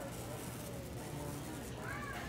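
A brief high-pitched voice sound rising and falling in pitch near the end, over steady store background noise.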